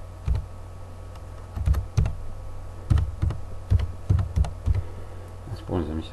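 Computer keyboard being typed on: about nine separate keystrokes at an uneven pace, with short gaps between them.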